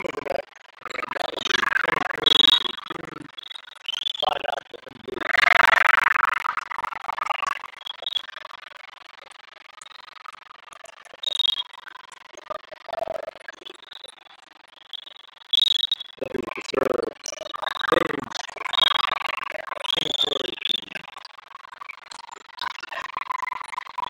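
Indoor volleyball play in a large echoing hall: bursts of shouting and cheering from players and spectators, with short high squeaks and sharp hits scattered through. It goes quieter to a low murmur around the middle, then the shouting picks up again near the end.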